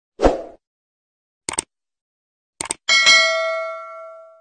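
Subscribe-button animation sound effect: a soft pop just after the start, two quick double clicks, then a notification-bell ding whose tones ring out and fade.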